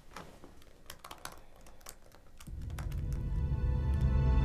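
Laptop keyboard being typed on, a scatter of quick key clicks. About two and a half seconds in, low sustained film-score music fades in and swells.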